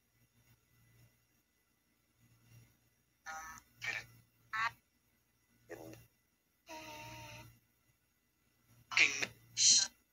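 Ghost box sweeping the radio band: short clipped fragments of voice, each a fraction of a second, with silent gaps between them and the two loudest near the end.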